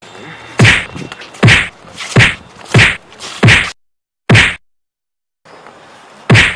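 Movie-style punch and slap sound effects: six sharp whacks in quick succession, roughly one every 0.7 s, each with a deep thud under it, then a sudden cut to dead silence for about a second.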